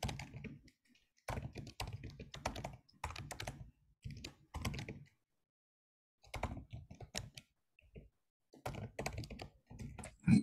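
Typing on a computer keyboard: bursts of quick keystrokes with short pauses between them, including one gap of dead silence about halfway through.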